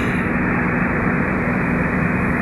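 A car driving on a highway, heard from inside the cabin: steady road and engine noise with a low, even drone.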